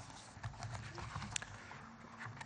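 Faint, irregular knocks, clicks and rustles of handling close to a lectern microphone, such as papers and objects being moved on the lectern.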